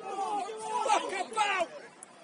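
Several short shouted calls from footballers on the pitch during play.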